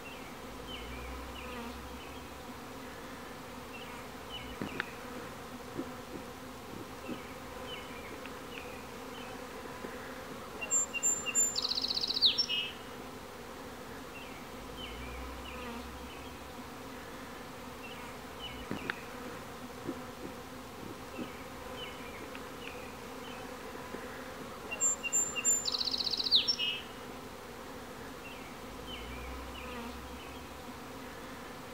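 Steady buzzing of a honey bee swarm flying around a hive box as it is being hived. A brief high-pitched call sounds twice over it, about a third of the way in and again near the end.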